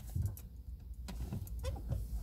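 A low steady hum inside a car's cabin, with a few faint clicks as the car's electrics power up and the instrument cluster lights.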